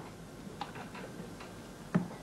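Room tone with a steady hiss and low hum, and a few faint, irregular ticks.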